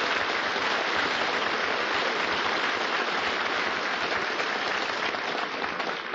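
Studio audience applauding, a steady wash of clapping that thins out near the end.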